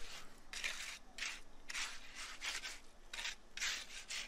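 Steel hand trowel scraping and pushing stiff, fairly dry fresh concrete, in a series of short rasping strokes about every half second.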